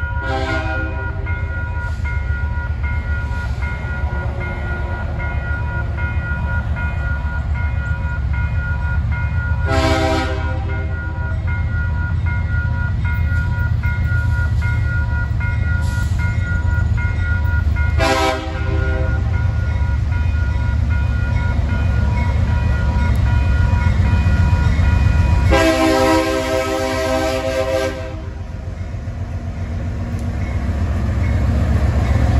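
Freight diesel locomotive's air horn sounding the grade-crossing signal of long, long, short, long, with the last blast about two and a half seconds long. Under it the railroad crossing bell rings steadily and the approaching locomotive's engine rumbles low.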